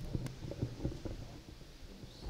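Microphone handling noise through the PA: irregular low thumps and a few sharp clicks, one sharper click about a quarter second in, as the microphone on its stand is adjusted.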